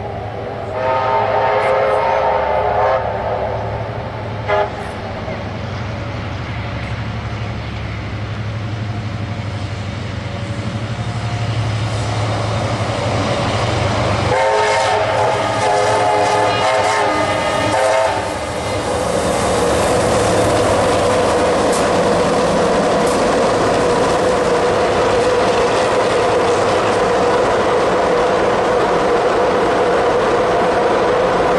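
Steam locomotive's whistle blowing two long blasts, each a chord of several tones: one about a second in lasting about two seconds, and another near the middle lasting about three and a half seconds. Then the train running past with a steady loud rumble.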